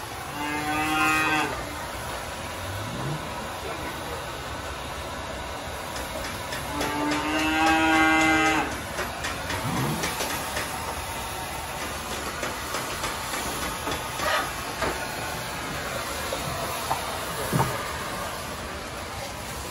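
A cow mooing twice, two long calls several seconds apart, over the steady running noise of a thermal fogger.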